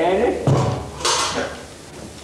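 A short clatter, like a hard object knocked about on the stage floor, about a second in, preceded by a dull low thump and the tail of a voice.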